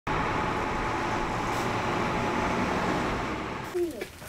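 Road traffic driving by: a heavy truck leading a line of vehicles, a steady engine and tyre noise that drops away near the end.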